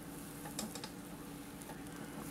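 Faint scattered light clicks of metal forceps picking at a silk tarantula egg sac, over a steady low hum.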